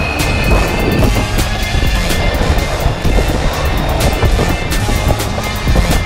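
Background music with a steady beat, over the rolling rumble of longboard wheels on asphalt.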